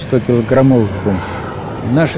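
A voice speaking for about the first second, followed by the steady rushing noise of a jet aircraft in flight.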